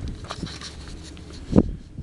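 Footsteps on gravel, a faint irregular scuffing, over a low wind rumble on the microphone, with a brief louder sound near the end.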